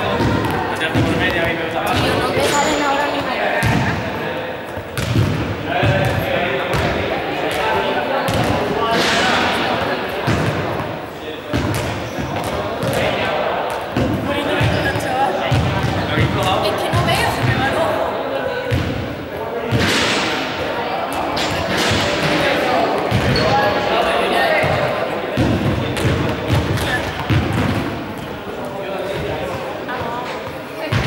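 Balls thudding and bouncing on a sports-hall floor many times over, echoing in the large hall, against a background of voices.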